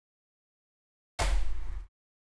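One short burst of handling noise, a little over a second in and under a second long: gloved hands rubbing and working at the edges of an Asus laptop's plastic bottom cover.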